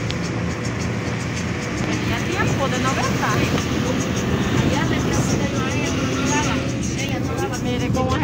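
Steady low rumble of a moving road vehicle: engine and road noise.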